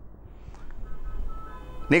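Faint background music under a pause in speech: a simple tune of soft, high, held notes stepping from one pitch to the next, over a low hum.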